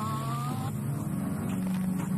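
Car engine revving, its pitch climbing smoothly for about half a second before levelling off into a steady low drone.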